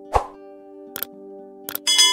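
Calm background music with long held tones, over subscribe-button sound effects: a pop just after the start, two short mouse clicks, then a bright bell ding that rings on near the end.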